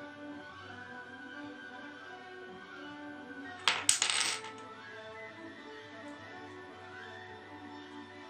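Wooden Jenga blocks clacking together: a short burst of several sharp clicks a little past the middle, over quiet background music.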